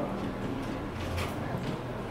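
Room noise in a large hall: faint, indistinct voices and a couple of light knocks about a second in.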